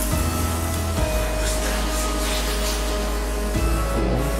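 Background music: held tones over a low bass line that changes note twice.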